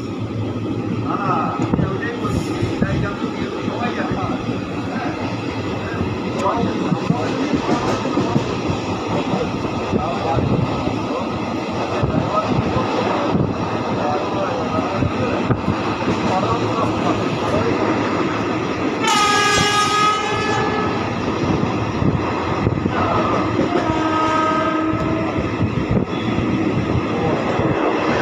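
Running noise of an express train heard from inside its coach through an open window: a steady rumble of wheels on the rails. About two-thirds of the way in, a train horn blows for about a second and a half, and a fainter horn follows a few seconds later.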